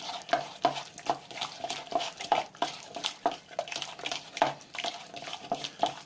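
A hand squeezing and mixing diced chicken in a thick egg and cornflour batter in a plastic bowl: a steady run of wet squelching strokes, about three a second.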